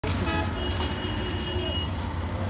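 Street traffic of CNG auto-rickshaws, engines running with a steady low rumble. A short horn toot comes near the start, then a thinner high-pitched horn note held for just over a second.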